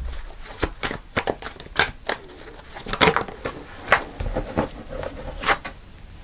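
A tarot deck being shuffled by hand: a run of crisp, irregular card clicks and snaps, a few a second.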